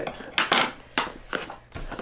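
Hands handling a cardboard box: a handful of light knocks and taps, some half a second apart, with a little scraping between them.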